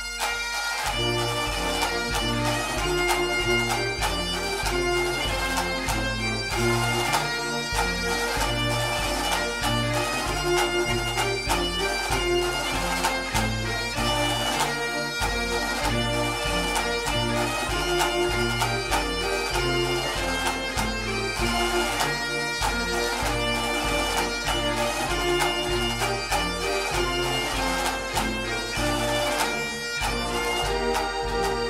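Bagpipe music with a steady, regular beat underneath.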